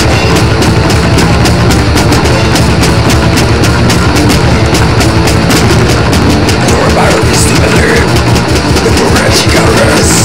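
Heavy metal song at full tilt: electric bass and distorted instruments over fast, steady drumming.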